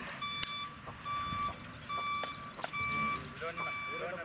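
Vehicle reversing alarm beeping steadily, a short electronic beep a little more often than once a second, with men shouting toward the end.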